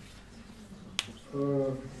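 A single sharp click about halfway through, followed by a man's voice speaking briefly.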